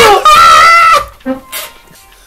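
A man's high-pitched, drawn-out cry of "¡Ay no!" as he is held down for a slap on the neck, cutting off about a second in.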